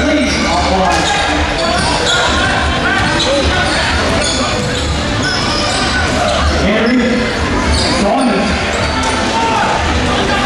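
Live basketball game sound in an echoing gym: a basketball bouncing on the hardwood court amid spectators' and players' voices and shouts.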